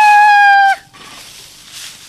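A rooster crowing: one loud, steady drawn-out note that cuts off about three-quarters of a second in.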